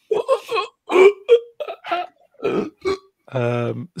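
A man's voice in short broken bursts, ending in a held low-pitched vocal sound near the end.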